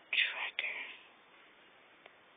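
A man's soft, breathy whispered speech for about the first second, then only faint steady hiss.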